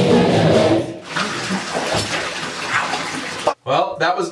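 Live punk rock band (guitars, drums, vocals) playing loudly, breaking off just under a second in. A couple of seconds of noisy sound with scattered voices follow, then a brief gap and a man starts speaking near the end.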